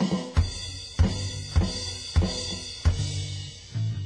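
A drum kit playing a beat of bass drum and snare hits with cymbals, about one hit every 0.6 s, under a bass guitar's low notes.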